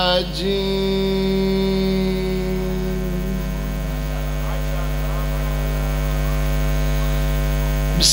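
Steady electrical mains hum through a microphone and public-address system: a constant low buzz with even overtones. A steady higher tone sits over it for the first few seconds, then fades.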